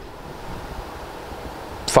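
Steady, even hiss of room tone in a pause between spoken phrases, with a man's voice starting again at the very end.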